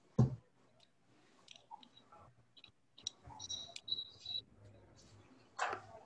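Faint scattered clicks with one louder knock just after the start, and a brief thin high tone in the middle.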